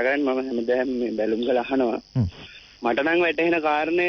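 Speech only: a presenter talking rapidly in Sinhala, with a brief pause about two seconds in.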